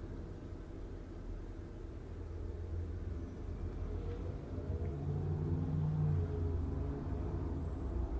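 Low background rumble that swells from about halfway through, with a faint rising tone in the middle.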